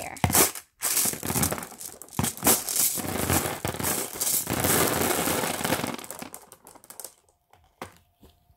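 Clear glass marbles poured from a mesh net bag into a plastic tub, a dense clattering rattle of glass on plastic and on glass that thins out and stops about six and a half seconds in.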